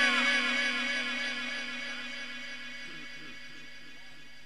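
The echo tail of a Quran reciter's last sung note through a public-address system with an echo effect, fading away over about three seconds.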